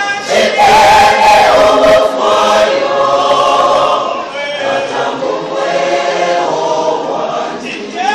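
Church choir singing a gospel song in several voices, loudest in the first few seconds, with a rush of noise over the singing during the first two seconds.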